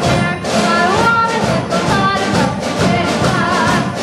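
Middle school concert band playing, with a girl's solo voice singing into a microphone over the band.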